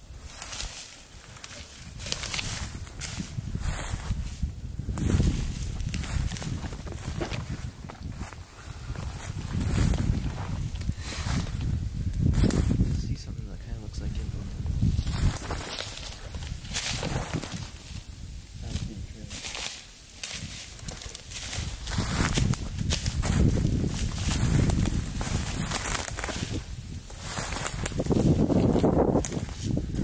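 Footsteps of people walking through dry fallen leaves and twigs on a snow-dusted forest floor, an irregular run of crunching steps.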